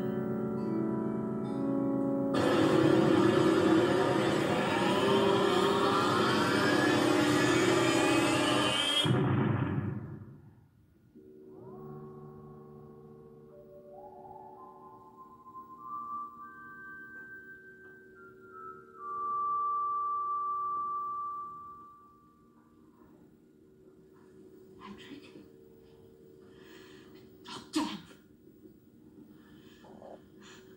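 Science-fiction sound effect of the space freighter's crash, played on a television: a loud roar with a rising whine for about seven seconds that cuts off suddenly. It is followed by a low electronic hum with higher synthesizer notes stepping upward, and a sharp click near the end.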